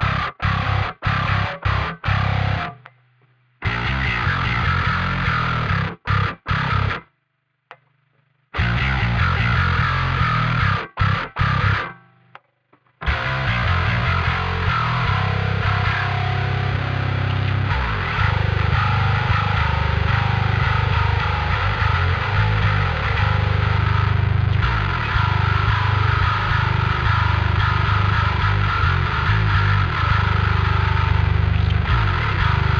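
Dingwall NG2 five-string electric bass played solo with the fingers through its onboard Darkglass preamp. For about thirteen seconds it plays short choppy notes and phrases broken by sudden dead stops, then it moves into continuous playing.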